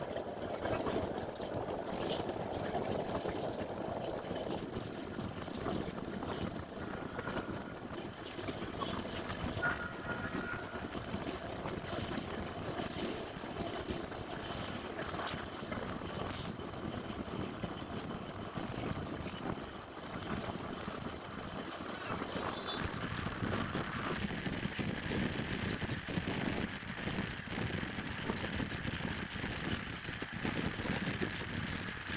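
Passenger train running on the track, heard from an open coach doorway: a steady rumble of wheels on rails with irregular sharp clicks through the first half.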